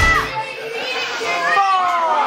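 Rock music cuts off just after the start, then children in the audience shout and call out in high voices, with several long falling calls near the end.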